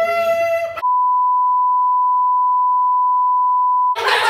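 A high, held vocal note lasting under a second, then a steady pure beep tone dubbed over the audio for about three seconds, blanking out everything else. It is a censor bleep covering swearing.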